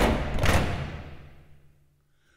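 Edited transition sound effect: a sudden heavy impact hit, with a second hit about half a second in, fading away over about a second and a half.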